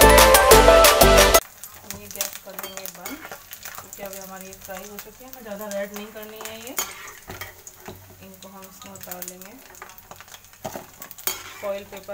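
Music cuts off suddenly about a second in. Then besan pakoris fry in hot oil in a kadhai: a soft sizzle, with a steel slotted spoon stirring them and clinking against the pan.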